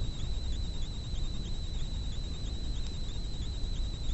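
Steady background hiss and low rumble with a constant thin, high-pitched whine, wavering slightly a few times a second.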